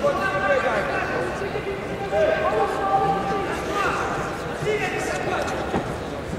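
Several people's voices talking and calling out at once, overlapping, with no clear words.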